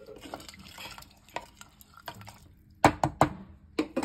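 Wooden spoon stirring rice and water in an aluminium pressure cooker, with a soft liquid swishing, then a few sharp knocks against the pot near the end.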